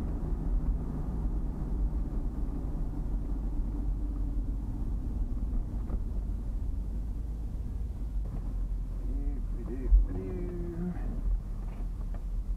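Steady low rumble of a truck's engine and tyres on the road, heard inside the cab, with one sharp thump about ten seconds in.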